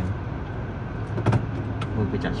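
Car engine and road noise heard from inside the cabin while driving, with one short knock a little over a second in.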